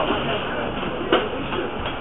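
Shuffling and rubbing of a handheld camera being carried through a busy room, with voices murmuring behind it; a single sharp knock a little over a second in.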